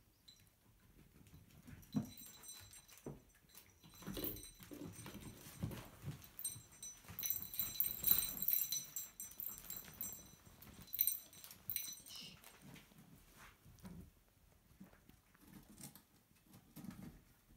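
Young cocker spaniel puppies whining in thin, high-pitched squeaks, loudest in the middle of the stretch, among light knocks and the patter of small paws on the floor.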